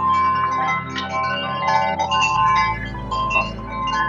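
Background ambient music: a steady low drone under a cluster of chiming, bell-like notes that comes in at the start.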